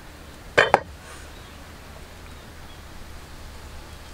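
A cleaver chopping through grilled cow skin onto a wooden cutting board: two sharp knocks in quick succession a little over half a second in.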